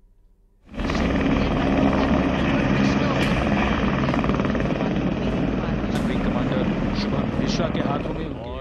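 Several military helicopters flying overhead in formation: a loud, steady rotor chop with engine noise that starts suddenly under a second in.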